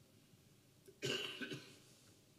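A person coughs: one short, sudden cough about a second in, trailing into a second, smaller one.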